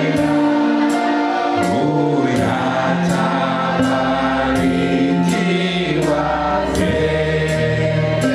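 Choir singing a Swahili gospel song over sustained accompaniment, with a steady light percussion tick keeping the beat.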